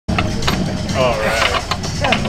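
A few light, sharp taps on a marching snare drum head as it is tried out, with a voice partway through and a steady low rumble underneath.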